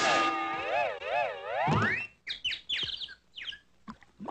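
Cartoon sound effect: a wavering, whistle-like pitched tone that swoops down and up twice and then slides steeply upward, followed by a quick run of short high squeaks, each dropping in pitch.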